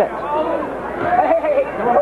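Men's voices talking over the murmur of an arena crowd.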